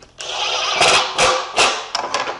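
Cordless impact driver sinking a No. 7 three-quarter-inch countersunk Phillips screw into wood, a rapid hammering rattle over the motor's whir. It starts a moment in and stops near the end.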